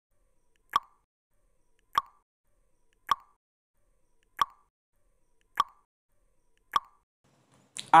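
Countdown timer sound effect: six short ticks, about one every 1.2 seconds, with silence between them.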